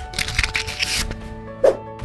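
Motion-graphics intro sting: music with held notes, overlaid with a long swishing sound effect in the first second and a short whoosh near the end.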